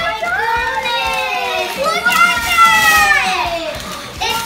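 Girls' excited voices in two long, drawn-out wordless cries, each sliding slowly down in pitch, the second louder, as a present is unwrapped.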